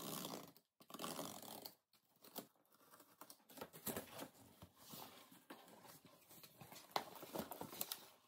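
Faint scraping and rustling of a cardboard shipping box being slit open with a box cutter and its flaps pulled back, with a short sharp knock near the end as the contents are handled.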